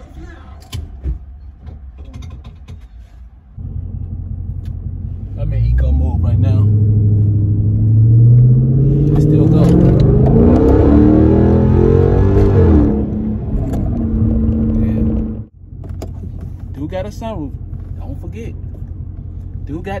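A car engine heard from inside the cabin: it gets loud a few seconds in and revs up with a long, steadily rising pitch for about six seconds, then eases back to a steady run. It cuts off suddenly near the end, leaving a quieter steady running sound under a voice.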